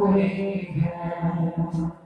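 A man's solo voice singing an unaccompanied naat, drawing out one long, wavering note that fades near the end.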